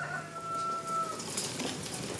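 A rooster crowing: one long held call that breaks off just over a second in.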